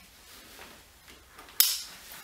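A single sharp plastic click about one and a half seconds in, fading quickly: a backpack's hip-belt buckle being snapped shut. Faint strap rustling before it.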